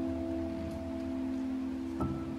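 Slow, soft solo piano music: a low chord held and slowly fading, with a faint steady stream sound underneath.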